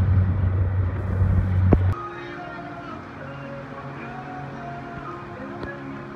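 Outboard motor of an inflatable dinghy running steadily with water splashing against the hull, cut off suddenly about two seconds in. Quieter music with held notes follows.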